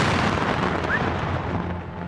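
A large explosion as a burning military vehicle blows up: a sudden blast just before, then its rumble dies away over about two seconds.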